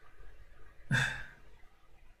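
A man's short, audible sigh about a second in.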